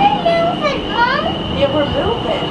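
A toddler's voice talking or babbling in short high-pitched phrases, words unclear, over a steady thin high tone and low hum.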